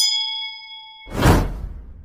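Sound effects of an animated subscribe button: a bright notification-bell ding rings for about a second, then a whoosh with a deep rumble swells up, loudest about a second and a half in, and fades away.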